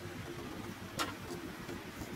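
A steady low engine rumble, with one sharp click about a second in.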